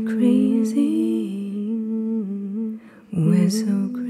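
A performer's voice humming long, held notes that waver slightly in pitch, breaking off briefly near three seconds in, then humming on.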